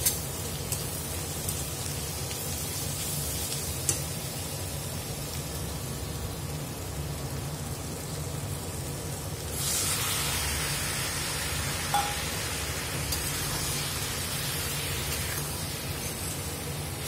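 Vegetables sizzling in a stainless steel kadai, with a few sharp metal clinks of the spatula against the pan; the sizzle turns louder and brighter about ten seconds in.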